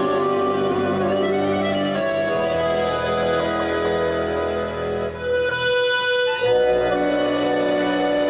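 Live band playing an instrumental passage with no singing: a piano accordion carries sustained, changing chords over a double bass line.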